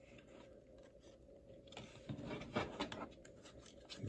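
Faint rustling and scraping of baseball cards and a foil-wrapped card pack being handled, busiest past the middle.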